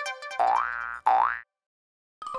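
Cartoon sound effects: a short chiming note, then two rising boings one after the other.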